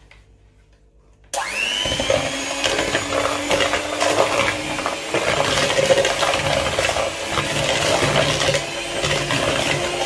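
Electric hand mixer switched on about a second in, its motor spinning up with a rising whine and then running steadily as the beaters cream butter and granulated brown sugar in a plastic bowl. It stops at the end.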